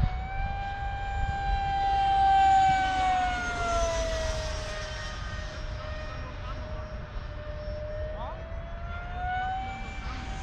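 Freewing L-39 radio-controlled jet's electric ducted fan, on an 8S battery, whining in flight. Its pitch dips slightly through the middle and climbs back near the end, with the loudest moment a couple of seconds in. The pilot says it sounds out of balance.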